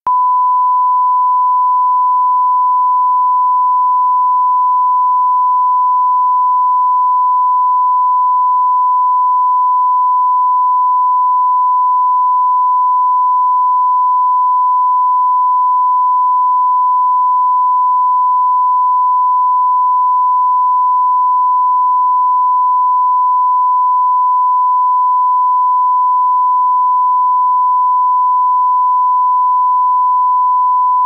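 Broadcast line-up reference tone: a single pure test tone held steady at one pitch without a break. It is laid under colour bars for setting audio levels.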